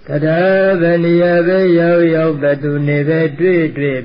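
A Buddhist monk's voice intoning a chant at an even pitch. It opens with one long held syllable of about two seconds, then moves into shorter chanted syllables.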